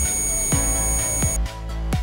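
Digital multimeter's continuity buzzer giving one steady, high-pitched beep as the probes bridge an unbroken wire, showing the circuit is closed; the beep cuts off about one and a half seconds in. Background music with a regular beat plays underneath.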